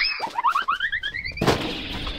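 Cartoon-style comedy sound effect: a quick upward swoop in pitch, then a run of short notes climbing higher and higher, cut off about a second and a half in by a sudden loud burst of noise.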